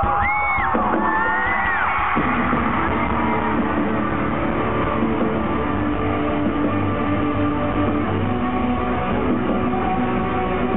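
A live rock band launching into a song, with electric guitars and drums loud through the PA. High rising and falling screams from the crowd over the first two seconds.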